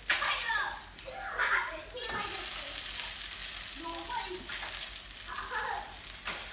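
Salmon cakes sizzling in oil in a nonstick skillet while a spatula scrapes under them to flip them. The sizzle swells about two seconds in, as a cake is turned onto its other side, and then runs on steadily.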